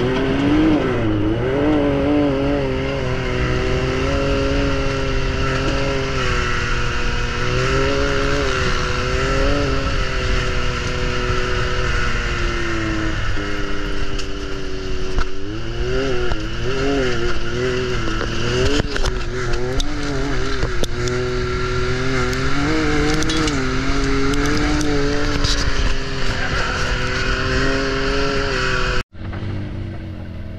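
Can-Am Maverick X3 side-by-side's turbocharged three-cylinder engine running under changing throttle, its pitch repeatedly rising and falling, with tyre and rolling noise, heard from on board. The sound drops out suddenly about a second before the end, then resumes quieter.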